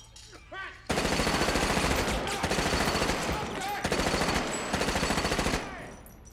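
Sustained automatic rifle fire: long, rapid bursts of shots that start about a second in and stop shortly before the end.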